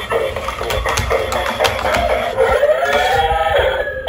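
Dancing robot toy playing its electronic dance music through its small built-in speaker, with a sharp clicking beat and a wavering melody line coming in about two and a half seconds in.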